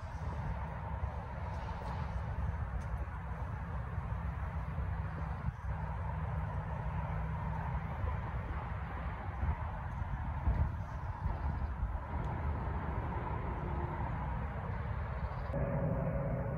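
Distant tree-clearing machinery running as a steady low hum with a faint steady whine above it.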